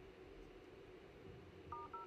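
Near silence, then near the end an iPhone X's dialer keypad tones: two short two-note beeps as number keys are tapped.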